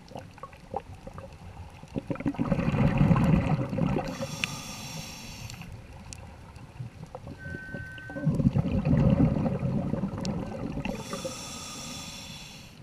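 A scuba diver breathing through a regulator underwater, in two breath cycles. Each exhalation is a low, gurgling rumble of bubbles lasting about two seconds, followed by a hissing inhalation through the regulator.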